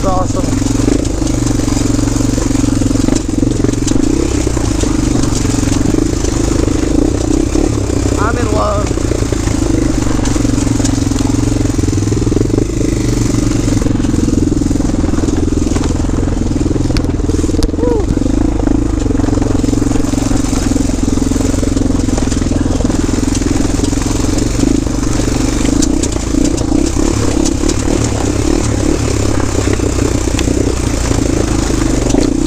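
Honda 400EX quad's single-cylinder four-stroke engine running at steady, moderate revs under way on a dirt trail, with little change in pitch.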